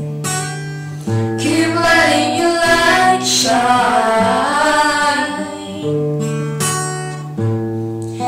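Acoustic guitar playing held chords that change every second or two, with a voice singing wordlessly over it.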